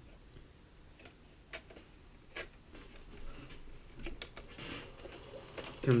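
Opened Sharp VCR's tape-loading mechanism at work: a run of light, irregular mechanical clicks and ticks with a brief faint whir partway through, as it draws the cassette's tape in.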